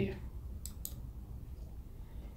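Computer mouse button clicking: two quick clicks about a fifth of a second apart as the OK button is pressed.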